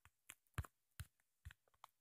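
Faint taps of a fingertip on a phone's touchscreen while typing on its on-screen keyboard, about six separate taps.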